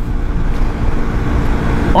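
Steady wind rush and engine noise from a Hero XPulse motorcycle's single-cylinder engine cruising at around 100 km/h on the highway, heard from the rider's position.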